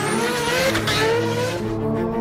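Nissan GT-R's twin-turbo V6 accelerating, its pitch rising through the first second, with tyre noise on a wet road.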